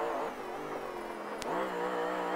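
Off-road race car's engine running hard over a dirt track. Its pitch dips and then climbs again as it picks up speed about one and a half seconds in, just after a single sharp click.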